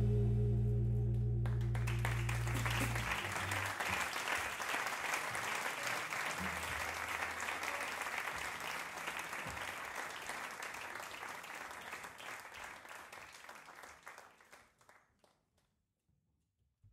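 The band's last chord rings on in the bass for the first few seconds and dies away. Audience applause starts about a second and a half in, then thins out and fades to nothing near the end.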